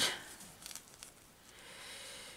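Faint rustling of paper and fabric pieces being handled on a journal page.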